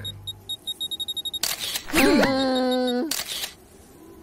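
Cartoon camera sound effects: a rapid run of short high beeps like a self-timer counting down, then sharp shutter clicks. Between the clicks, a cartoon character's voice swoops and then holds one note for about a second.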